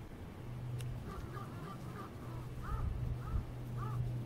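Short chirping animal calls, each rising and then falling in pitch. A quick run of them comes about a second in, then single calls follow every half second or so, over a steady low hum.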